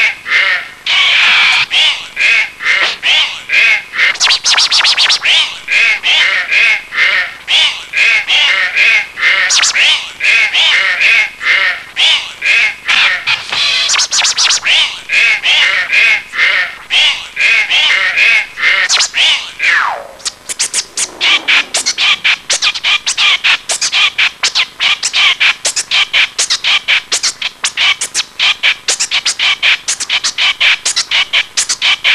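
A vinyl record scratched by hand on a turntable over a beat: fast, choppy back-and-forth scratches and warbling sweeps. About two-thirds of the way through, the record is dragged into one long falling slowdown, followed by quicker, evenly spaced cuts.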